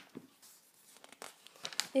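Glossy paper pages of a printed catalogue being turned by hand: soft rustling with a few crisp crinkles, busier near the end.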